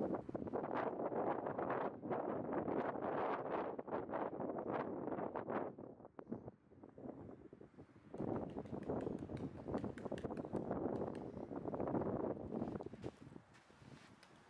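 Wind buffeting the microphone in two long gusts, the second starting about halfway through after a brief lull.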